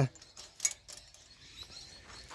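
A few light, sharp clicks from the links of a loose length of new full chisel saw chain as it is handled and laid along a metal bar. The loudest click comes just over half a second in.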